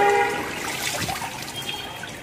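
Water trickling and sloshing as a soaked jacket is pressed down into the soapy water of a washing machine tub, fading slightly toward the end.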